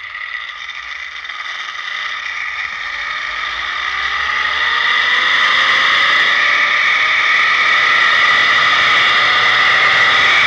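Zip line trolley's pulley wheels running along the steel cable: a loud whine whose pitch slowly rises and whose level grows over the first five seconds as the trolley gathers speed, then holds steady.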